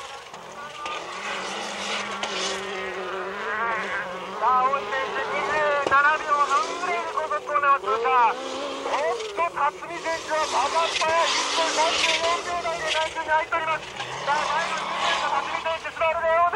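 Dirt-trial rally car's engine driven hard, its pitch repeatedly rising and falling as it revs and drops back through the gears, growing louder over the first few seconds.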